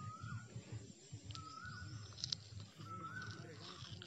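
A bird calling over and over: a short whistled note that rises and then levels off, three or four times about a second and a half apart, over faint distant voices.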